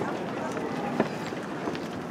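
Faint, indistinct voices of people over a steady rushing background noise, with one sharp click about a second in.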